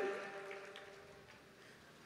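The echo of a man's microphone-amplified voice dying away in the hall after he stops speaking, fading to near silence within about a second and a half.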